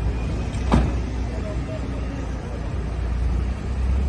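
Low, steady rumble of idling vehicle engines, with one sharp knock a little under a second in.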